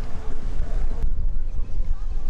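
Wind buffeting the camera microphone: a loud, uneven low rumble, with the fainter hiss above it dropping away about a second in.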